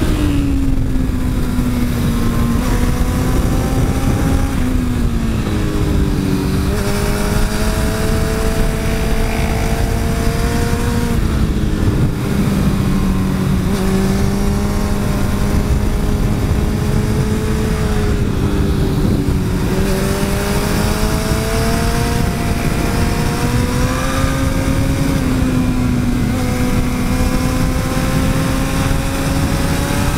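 Sport motorcycle engine running hard on a race track, its note falling as the throttle rolls off and climbing again through the corners, with a few sudden steps in pitch at gear changes. A heavy rush of wind and road noise runs underneath.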